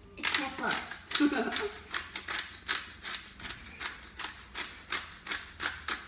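Black pepper grinder being twisted by hand, giving a quick run of dry clicks, several a second.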